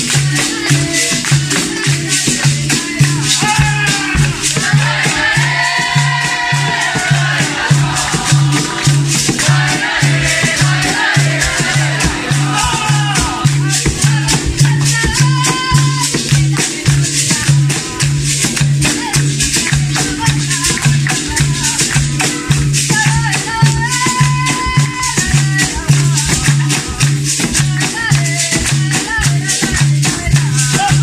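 Capoeira roda music: berimbaus with caxixi rattles and an atabaque drum keep a steady rhythmic beat under hand-clapping from the circle. Phrases of call-and-response singing come in and out over the top.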